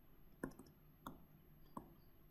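Near silence with three faint, sharp clicks about two-thirds of a second apart: a stylus tapping on a drawing tablet or screen while handwriting.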